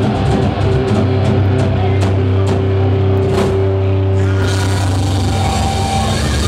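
Live metal band playing loudly: distorted electric guitars holding chords over bass and a drum kit with cymbal strikes. About four and a half seconds in, the sound turns brighter and hissier.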